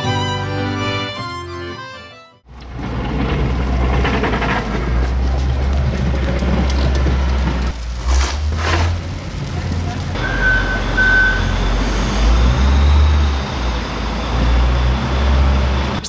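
Violin music fading out in the first two seconds, then outdoor street sound in falling snow: a heavy, steady low rumble, a snow shovel scraping once about eight seconds in, and two short high beeps just after ten seconds.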